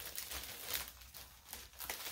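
Clear plastic packaging bags crinkling irregularly as small kit parts are handled and pulled out, with a few sharper crackles.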